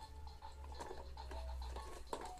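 Electronic melody from a baby activity jumper's toy, a run of short, faint beeping notes at a few different pitches, over a low rumble from handling of the phone.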